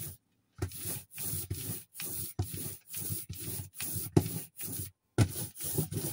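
Hand ink roller (brayer) rolling oil paint out on the inking surface, spreading it thin: a noisy hiss in quick back-and-forth strokes, about two or three a second, with short breaks just after the start and about five seconds in.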